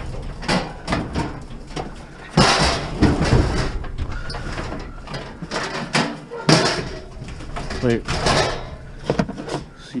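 Metal gas barbecue grill being pushed and wrestled into a vehicle's cargo area. Its panels knock repeatedly against the door frame and interior, with a few longer scraping, rattling stretches as it is shoved.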